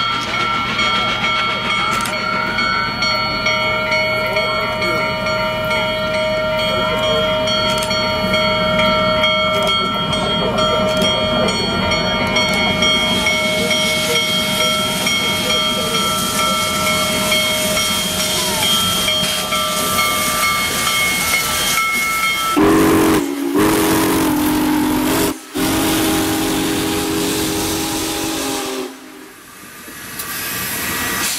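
Union Pacific Big Boy 4014's steam whistle blowing a long, steady chord for about twenty seconds, with a steam hiss rising under it as the locomotive draws near and passes. After that a lower whistle tone sounds, broken twice by brief gaps, and the sound drops away near the end.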